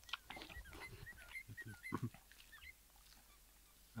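Close chewing and mouth sounds of someone eating a bite of meat wrap, with a string of short, high whining calls from an animal during the first two-thirds.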